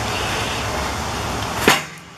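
Steady rushing noise, then a single sharp knock near the end as a split piece of log is handled on a log splitter.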